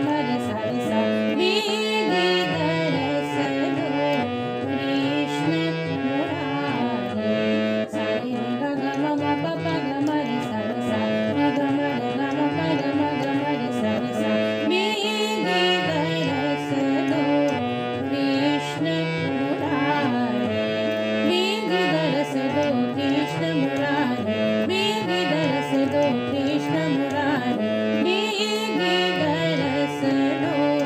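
Harmonium playing Raag Bilawal taans in medium-tempo teentaal: quick runs of notes stepping up and down the scale without a break.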